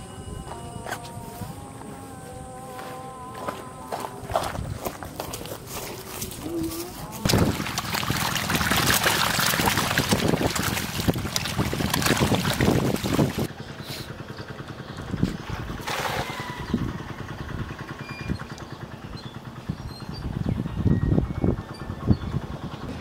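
Dense splashing and slapping of water as a crowd of catfish thrash over a heap of meat scraps at the water's edge, loudest for about six seconds in the middle.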